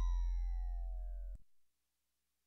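Electronic sound effect: several tones gliding slowly downward together over a low hum, fading and cutting off suddenly about one and a half seconds in.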